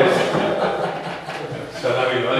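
Indistinct voices of several people talking at once, none of it clear speech, fainter in the middle and picking up again near the end.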